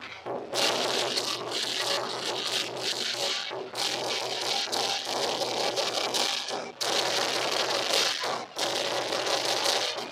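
A lion dance in a packed street: dense, loud clattering and crackling that breaks off briefly every few seconds, over crowd noise.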